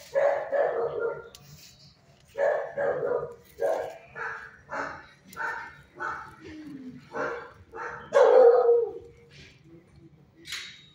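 A dog barking over and over, about a dozen short barks in quick succession with a brief pause about two seconds in. The loudest and longest bark comes near the end.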